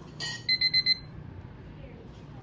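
A brief click or rustle, then four quick high electronic beeps in a row, over faint room tone.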